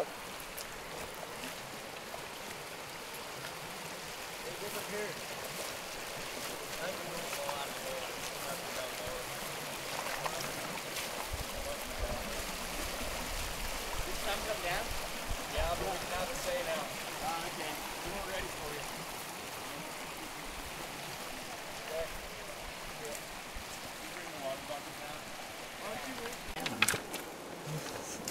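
Shallow rocky creek flowing, a steady rush of water, with faint voices in the distance at times.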